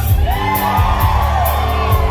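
Live country band playing, with electric bass, drum kit and guitars; over it a voice holds one long note that rises and falls.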